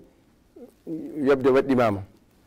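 A man's voice speaking after a brief pause, his pitch falling at the end of the phrase.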